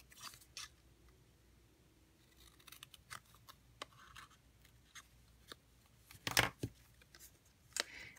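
Scissors snipping cardstock in a few quiet, separate cuts, the loudest about six seconds in.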